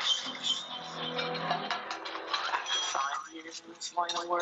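A film clip's soundtrack, music with a voice over it, playing through a Bose All-In-One TV soundbar just switched on.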